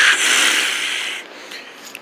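A breathy, whooshing hiss that fades away over the first second or so, leaving a low room hush.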